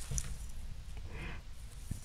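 Quiet handling sounds of small plastic craft pieces and a craft knife in the fingers: a couple of light clicks and a soft rustle over a low steady hum.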